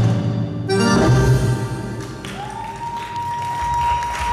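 Live Arabic band music with keyboard and violin at the end of a piece. A final chord comes in just under a second in and dies away. A single high note then starts about halfway through and is held steady.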